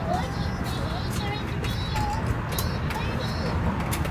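Furby toys chattering in short, high, chirpy electronic voices, one after another, over a steady low rumble.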